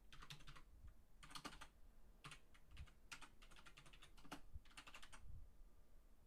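Faint typing on a computer keyboard, in about seven short bursts of keystrokes.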